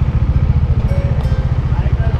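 Kawasaki Z900's inline-four engine idling with a loud exhaust, a steady rapid low pulsing.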